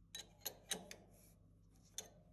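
A few light, sharp metal clicks of a spanner being fitted to the ER40 collet chuck's nut, four in the first second and one more near the end, over a faint low steady hum.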